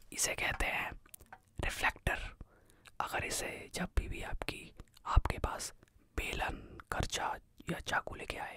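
A man whispering close to the microphone in short phrases, with a couple of soft knocks midway through.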